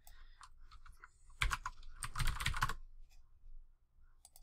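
Computer keyboard being typed on: a few keystrokes about a second and a half in, then a quick run of keystrokes just after two seconds.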